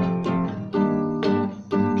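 Acoustic guitar strummed, chords struck about every half second and ringing between strokes.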